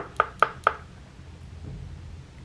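Three light clicks in quick succession, within the first second, then faint room tone.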